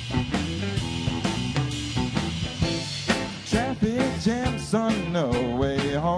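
Live rock trio playing: electric guitar, electric bass and drum kit, with a steady drum beat and a bending melody line in the second half.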